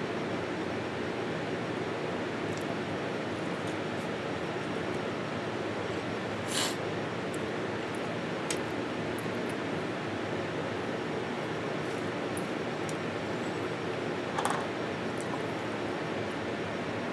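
A steady hiss of room noise, with a few brief light clicks and taps from handling food, a spoon and a hot sauce bottle at the table.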